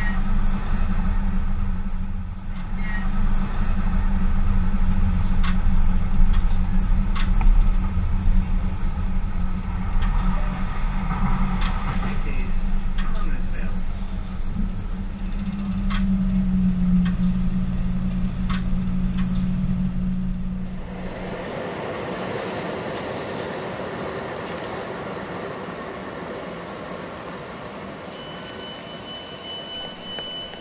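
Tyne and Wear Metrocar running along the line, heard from inside: a steady low hum with scattered sharp clicks. About two-thirds of the way through the hum stops and a quieter, hissier sound takes over.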